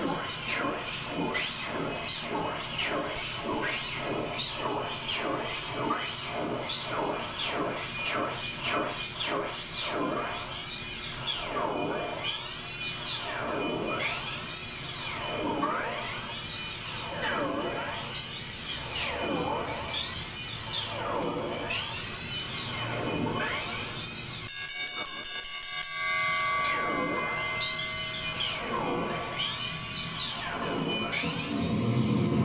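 Industrial noise from a rack of guitar effects pedals (flanger, delay, spring reverb). It starts as a pulsing drone at about two beats a second and turns into repeated swooping sweeps that rise and fall about every second and a half. Near the end comes a short run of rapid loud clicks, followed by steady held tones.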